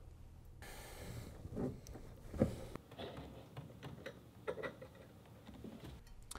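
Faint clicks and light taps of small parts being handled: the kayak's rudder crank, its pin and spring being fitted by hand. A soft hiss sits under the first couple of seconds.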